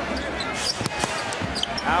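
A basketball bouncing on a hardwood court in a large arena, with a few sharp knocks and short high squeaks.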